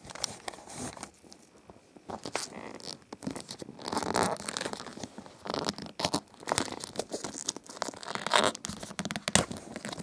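Clear plastic shrink-wrap being picked at and torn off a cardboard box by hand, crinkling and tearing in short, irregular bursts.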